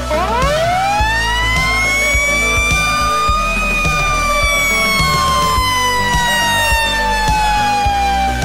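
Fire engine's mechanical siren winding up, climbing steeply in pitch over about the first three seconds and then slowly falling as it coasts down, heard over background music.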